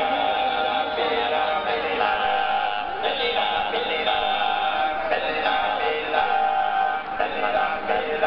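Sardinian folk music: male voices singing in held, chant-like notes that change about once a second.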